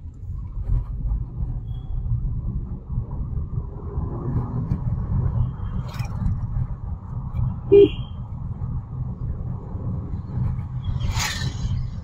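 Steady low road and engine rumble heard from inside a moving car's cabin. A short, sharp sound stands out about eight seconds in, and a brief hiss comes near the end.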